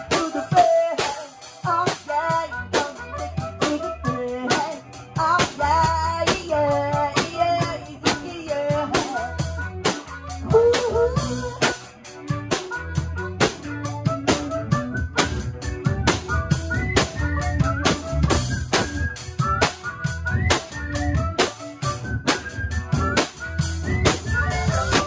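Five-piece rock band playing live: a drum kit keeping a busy beat of snare and bass drum strikes, electric bass, electric guitar and pitched lead lines that bend in pitch over the top.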